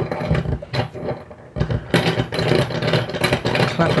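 RØDE PSA1 desk clamp's threaded metal screw being twisted up against the underside of a desk: a few separate knocks, then from about one and a half seconds in a dense, continuous rattling and scraping as the screw is turned tight.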